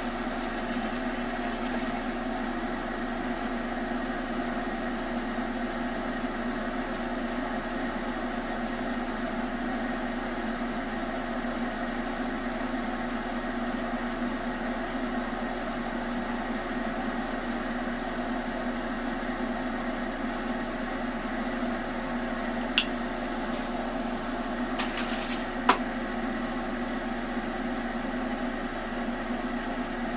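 Steady rushing hum of a lampworking bench torch burning, together with the exhaust fan of the ventilation hood above it. A sharp click about two-thirds of the way through, then a brief cluster of clicks a couple of seconds later.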